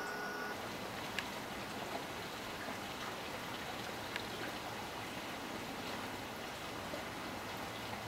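A steady, even hiss with a few faint ticks and no other distinct sound.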